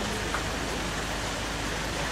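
Steady, even hiss of outdoor background noise with no distinct events.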